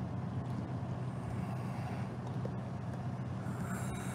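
A steady low engine hum.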